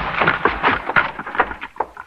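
Radio-drama sound effect of a door being forced and crashed open: a rapid run of heavy crashes and thuds.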